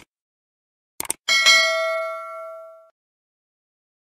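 Mouse-click sound effects of a subscribe-button animation: a short click at the start and a quick double click about a second in. A notification-bell ding follows and rings out, fading away over about a second and a half.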